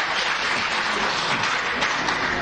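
Audience applause, a steady dense clapping.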